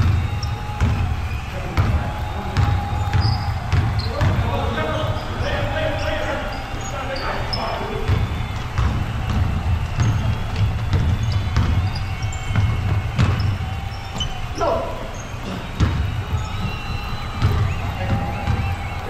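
Pickup basketball on a hardwood gym floor: the ball dribbling, footsteps running, short sneaker squeaks and players' indistinct calls, all ringing in a large gym.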